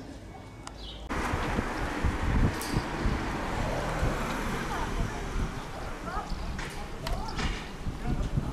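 Outdoor street ambience that jumps suddenly louder about a second in. It becomes a steady rushing noise with people's voices in it.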